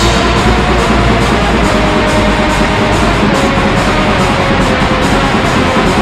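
Raw black metal: a loud, dense wall of distorted guitar and drums, with cymbals struck steadily throughout.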